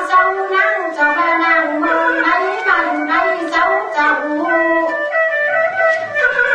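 Tai Lue khap singing: one voice sings a melody of held, wavering notes that step up and down in pitch, with instrumental accompaniment.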